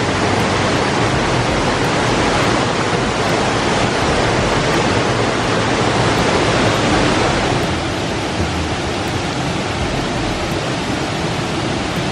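Waterfall rushing steadily, an even wash of falling water over rock ledges. It becomes slightly quieter about two-thirds of the way in.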